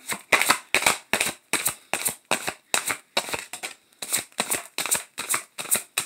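A deck of chakra reading cards being shuffled by hand: a quick, even run of soft card slaps and flicks, about five a second.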